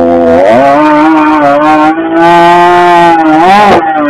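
Husqvarna 562 XP two-stroke chainsaw cutting through a log at full throttle. Its pitch dips as the chain bites, holds steady under load, then revs sharply higher near the end and drops suddenly.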